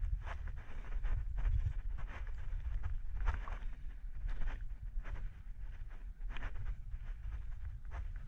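Wind rumble on a climber's body-mounted GoPro, with short scuffs and rustles every second or so as his hands, feet and gear move on the rock.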